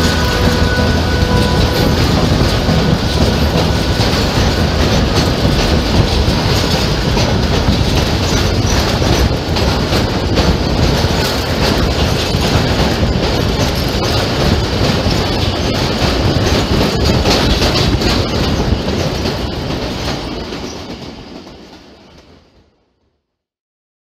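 Passenger train running on the line, heard from inside a carriage near an open door: a steady rumble and rush with wheels clattering over the rail joints. It fades out over the last few seconds.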